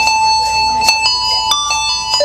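Live band music with bright, bell-like keyboard tones: one held note, then a few higher notes stepping in from about halfway, with a couple of sharp drum hits.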